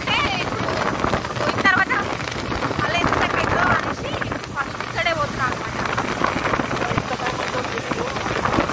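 People talking on a moving motorcycle, their voices coming in short stretches over steady wind rush on the microphone.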